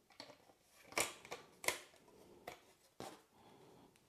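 A few faint, separate plastic clicks and taps as 3D-printed car body panels are handled and fitted together.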